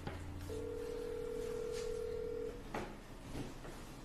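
Telephone ringback tone heard over a phone speaker: one steady ring about two seconds long, then a couple of light clicks. It is an outgoing call ringing unanswered at the other end.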